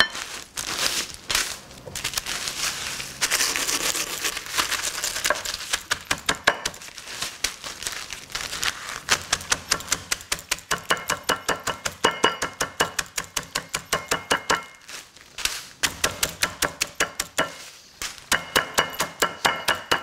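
Tortilla chips in a zip-top plastic bag being pounded with a bottle on a wooden cutting board, crushed toward fine, dust-like crumbs: rapid repeated knocks with the chips crunching and the plastic bag crinkling, broken by a short lull near the end.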